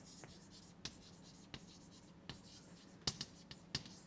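Chalk writing on a blackboard: faint short taps and scratches as letters are written, with a quick cluster of sharper taps near the end.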